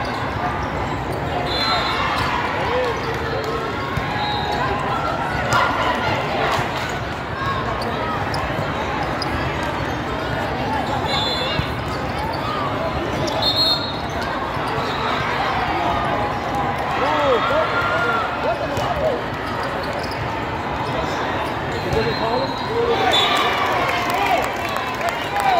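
Volleyball tournament in a large, echoing hall: a steady babble of many voices, with the sharp thuds of volleyballs being hit and bouncing across the courts and brief high squeaks now and then.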